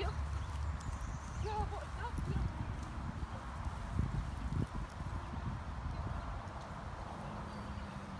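Low rumble of wind on the microphone, with a few soft thumps and a short high call-like sound about one and a half seconds in.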